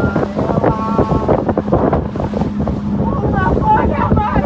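Boat engine running steadily under heavy wind noise on the microphone, with a voice singing over it.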